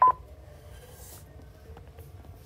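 Mindray BeneHeart D3 defibrillator giving a click and one short beep as its navigation knob is pressed to advance the controls self-test, then only a low hum.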